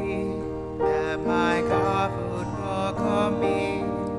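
Slow church music during Communion at Mass: held notes over a sustained low bass, with the melody moving to a new note about every half second to a second.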